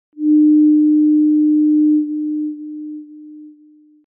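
A single steady electronic tone held at one pitch, like a test tone. It is loud for about two seconds, then steps down in level several times and stops about four seconds in.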